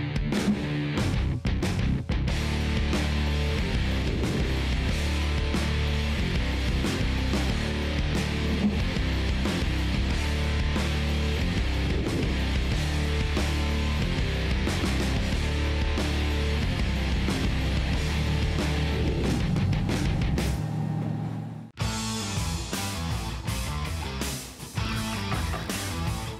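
Rock soundtrack music with electric guitar, loud and steady, cutting out abruptly for a moment near the end before coming back in.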